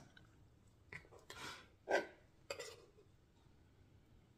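A few short, light clinks and knocks of a metal table knife being picked up and handled over a wooden cutting board, with soft handling of wonton wrappers.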